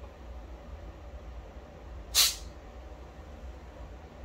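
Mason jar lid loosened to burp the jar: a short hiss of built-up gas escaping, about two seconds in, lasting under half a second.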